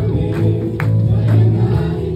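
Group singing a gospel worship song, with hands clapping along.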